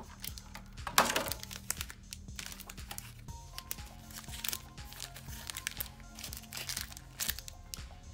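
Foil Pokémon booster packs crinkling and a clear plastic card holder clicking as they are handled, with a sharp click about a second in. Background music plays underneath.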